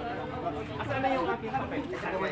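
Several people talking at once: overlapping chatter of voices, with no single clear speaker.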